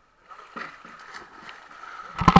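Faint, muffled outdoor pool ambience picked up through a GoPro's waterproof housing, with a thin steady tone and a few soft knocks.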